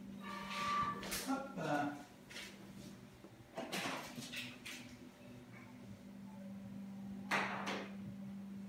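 Indoor room tone: a steady low hum, with quiet voices in the first two seconds and short rushing noises about four seconds in and again near the end.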